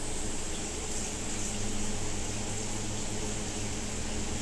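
Steady low hum and hiss of background noise, even throughout, with no distinct knocks or tool sounds.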